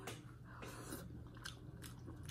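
Faint close-up chewing and mouth sounds of eating crab meat, with a few soft clicks.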